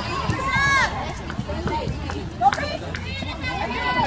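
Voices shouting and calling out during a soccer match, in short high-pitched calls near the start and again later, over steady background noise, with one sharp knock about halfway through.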